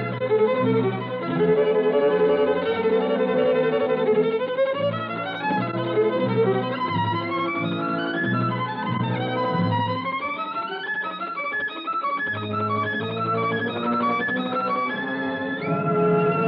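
Solo violin playing a virtuoso concert piece with orchestral accompaniment: quick rising scale runs a few seconds in and again near the middle, then short repeated notes. The top end is cut off, giving the thin sound of an old broadcast recording.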